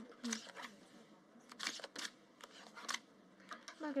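Playing cards being drawn from a dealing shoe and laid on a baccarat table: a series of short, crisp card slides and snaps, most of them from about a second and a half in.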